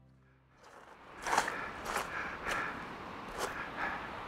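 Footsteps on a beach of large rounded pebbles, about five steps starting a second in, over the steady wash of the sea.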